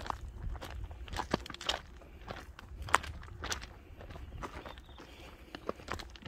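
Footsteps on a loose, stony gravel path, an irregular run of steps about two a second.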